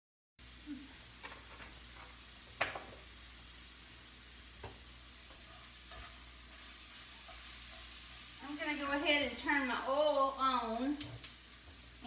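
Ground beef cooking faintly in a skillet while a spoon stirs it, with a few light clicks of the spoon against the pan. Near the end a voice runs for a couple of seconds.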